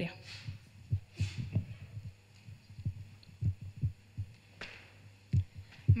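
Handheld microphone handling noise as the microphone is passed from one person to another: a string of soft, irregular low thumps, with brief rustles about a second in and again near the end.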